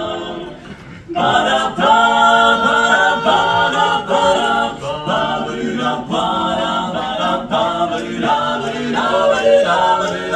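Male barbershop quartet singing a cappella in close four-part harmony. The voices come in about a second in with short, rhythmic phrases.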